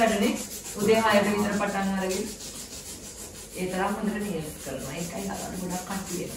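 Nail file rubbing on false fingernails in repeated strokes as they are shaped, with a woman's voice talking over it in two stretches.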